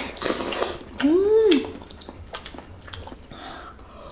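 People eating juicy canned mango: a short wet slurping bite, then a rising-and-falling hummed 'mmm' of enjoyment about a second in, followed by quieter chewing with a few faint utensil clicks.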